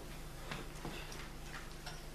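Faint, unevenly spaced light ticks over a steady low hum of room noise.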